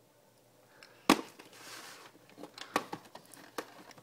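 Plastic VHS case being opened and the cassette handled: a sharp click about a second in, a brief rustle, then several lighter clicks and taps.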